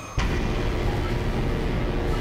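A steady rumbling noise that starts suddenly just after a scene cut and holds level, with no speech.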